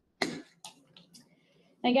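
A person coughs once sharply, followed by a few softer throat-clearing sounds, before speech resumes near the end.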